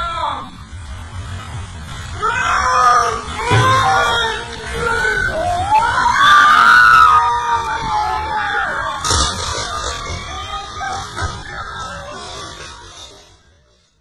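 Voices yelling and screaming, slowed down so they sound deep and drawn out, sliding in pitch. They fade out near the end.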